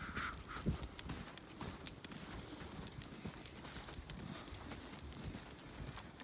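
Footsteps on snow at a walking pace, a run of soft low thumps.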